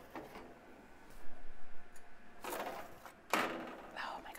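A metal baking sheet scraping over a wire oven rack as it is pulled out of the oven, in two short bursts: about a second in, and again past halfway.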